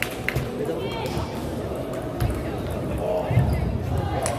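Table tennis balls clicking off tables and bats, a few quick hits in the first half-second, over the hubbub of voices in a crowded sports hall with many tables in play.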